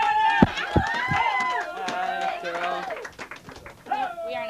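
Several people's voices at once in drawn-out, wordless calls that overlap and bend slowly in pitch for about three seconds, then trail off.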